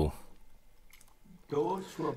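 A man's speaking voice stops, then there is a pause of low room quiet with one faint click, then his voice starts again.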